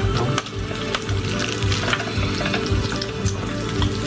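Food sizzling as it cooks: a dense, steady crackle scattered with small clicks, with background music holding steady notes underneath.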